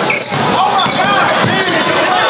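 Basketball bouncing on a gym court amid the voices of players and spectators, with short squeaks and a few thuds.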